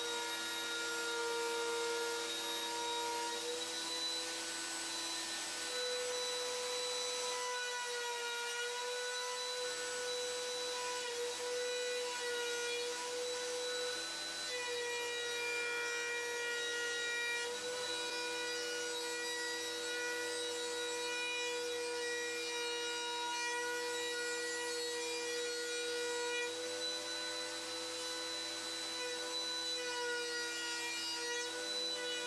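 Router spinning in a router table, cutting the edge of a plywood board fed along the bit: a steady motor whine whose pitch dips and shifts slightly as the cut loads it.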